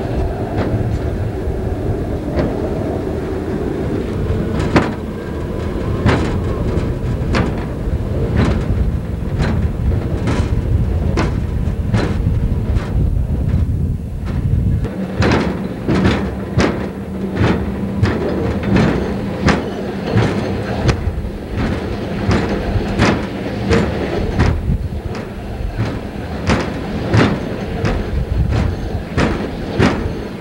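Rail-riding hi-rail truck running along jointed track: a steady rumble with a regular clicking as its wheels cross the rail joints, a little over once a second at first, then faster and louder from about halfway through.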